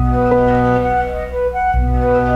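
Piano music: a deep bass note sounds at the start and again near the end, under held chords.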